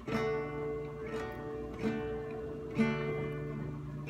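Guitar strumming a D major chord four times, about a second apart, each strum left to ring.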